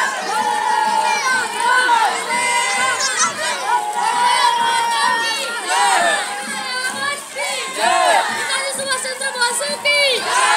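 A crowd of schoolchildren shouting together as they march, many high voices overlapping in rising and falling calls.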